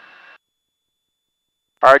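Dead silence with no engine or cockpit noise, broken near the end by a man's voice saying "alright".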